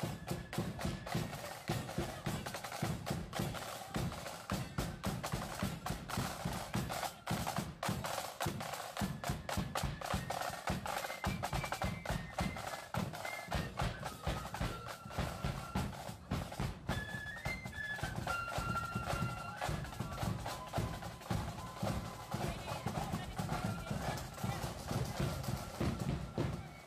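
Marching flute band playing: snare and bass drums beat out a march, with the flutes' melody above them, plainest around the middle.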